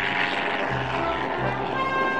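Music playing over the steady drone of a small single-engine propeller plane taking off.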